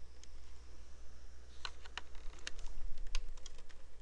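Computer keyboard keys tapped in an irregular run of sharp clicks starting about a second and a half in, over a low steady hum.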